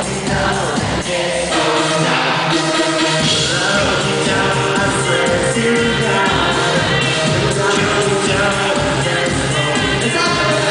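An electropop band playing live and loud, with drums, synths and a lead vocalist singing into a microphone. The bass drops out briefly about two seconds in, then the full band comes back.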